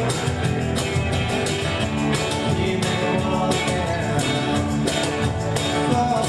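A folk-rock band playing live, with strummed acoustic guitars and an electric guitar over a steady beat.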